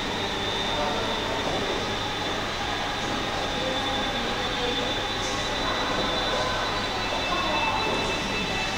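Steady ambient rumble and hiss of a large indoor public space, with a couple of faint high steady tones and faint distant voices.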